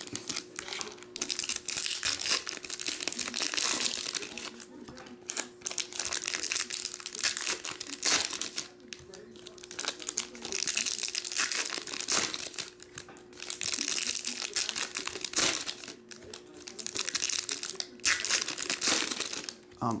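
Silver foil trading-card pack wrappers crinkling and tearing as packs are ripped open by hand, in repeated bursts with short pauses between packs. A faint steady hum lies underneath.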